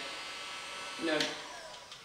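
Handheld electric heat gun running with a steady blowing hum. It fades toward the end.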